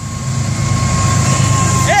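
Florida East Coast Railway GE ES44C4 diesel locomotives approaching, their engine rumble growing steadily louder as the lead unit draws alongside, with a faint steady high tone above it.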